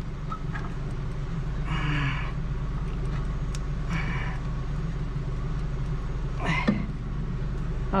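Small ratchet driving a brake-caliper piston rewind tool clicks in two short runs, about two and four seconds in, as a stiff rear caliper piston is wound back. A steady low engine idle hum runs underneath, and there is a brief grunt near the end.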